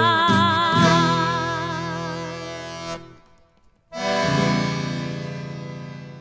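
Accordion and guitar playing the closing chords of a chamamé: a long held chord fades out, breaks off for nearly a second, then a final chord sounds about four seconds in and slowly dies away.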